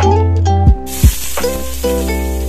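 A slice of brinjal, coated in turmeric, goes into hot oil and sets off a steady sizzle a little under a second in. Plucked-string background music plays throughout, with two low thumps around the moment the sizzling starts.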